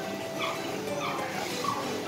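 Several short, high-pitched animal calls, a handful of brief yelps spread through the two seconds.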